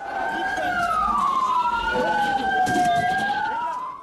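Two emergency vehicle sirens wailing at once, their slow rising and falling tones crossing each other, over the murmur of a crowd's voices.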